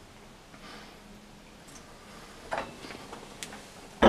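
Quiet handling of lab glassware as a water-filled, stoppered 100 mL graduated cylinder is turned upside down and lowered into a large beaker of water: a few faint knocks and clicks in the second half.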